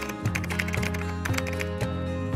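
Keyboard-typing sound effect, a fast run of key clicks for about the first second and then a few more, over background music with held tones.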